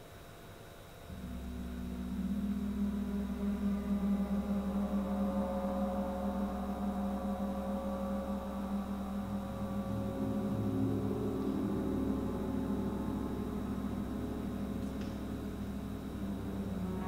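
Large Paiste gongs played softly with a mallet: a deep hum comes in about a second in, swells over the next couple of seconds, then sustains as a dense, slowly shifting ring of overtones.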